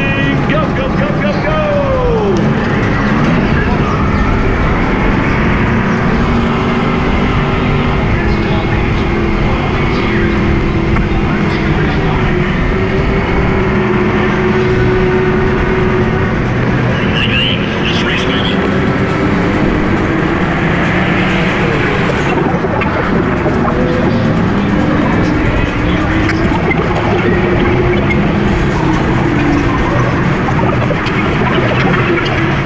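Go-kart's motor running through the laps, its pitch rising and falling as the kart speeds up and slows for the turns, over a steady rush of noise.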